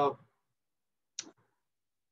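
A man's voice trailing off at the end of a word, then silence broken once, just over a second in, by a single short, sharp click.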